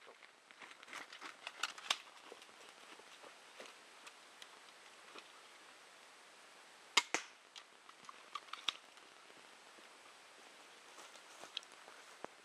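Armex 80 lb pistol crossbow fired once, a sharp double crack about seven seconds in. Before and after it come scattered clicks and rustling as the crossbow is reloaded on the run up a slope.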